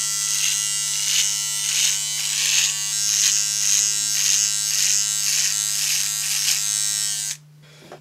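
Handheld electric trimmer buzzing as it is run over the sideburns, its pitch dipping and recovering about twice a second as it bites into the hair. The buzz cuts off suddenly a little after seven seconds in.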